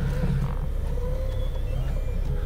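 Forklift engine running steadily, heard from inside the cab as a low, even hum with a faint higher whine held above it.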